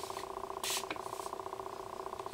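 A short nasal sniff at the nozzle of a heat-protection hair spray bottle, less than a second in, over a steady, fast-pulsing background buzz.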